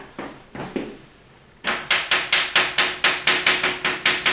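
Chalk writing on a blackboard: after a few soft knocks, a quick run of sharp chalk taps and strokes, about four or five a second, starts a little over a second and a half in.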